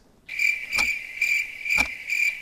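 Countdown timer sound effect: a high electronic beeping tone that pulses a little over twice a second, with a sharp tick about once a second, as the answer time runs out.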